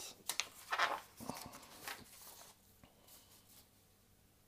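Sheets of paper rustling and sliding against each other on a desk as they are shuffled, a few short scrapes in the first two seconds, then quieter.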